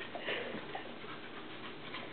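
Two dogs, a young puppy and an adult, playing together, with a few short, faint play noises in the first second.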